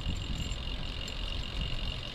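Recumbent trike rolling downhill on a paved path: a steady low rumble of tyres on asphalt and wind on the microphone, with a faint steady high whine over it.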